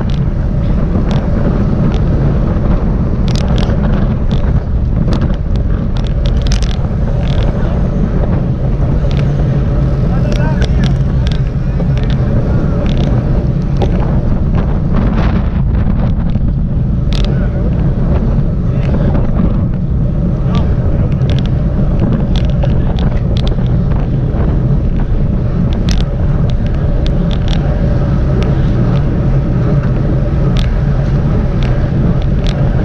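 Continuous wind buffeting on the microphone of a camera mounted on a racing road bike, over road and tyre rumble from riding at speed in a group of cyclists, with scattered short sharp clicks.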